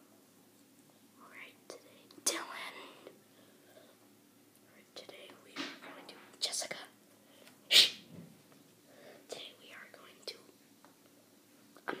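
Whispering: short, breathy whispered phrases with no voiced speech, the sharpest hiss a little past halfway.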